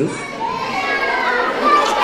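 An audience of young children calling out together, many high voices overlapping in one sustained shout.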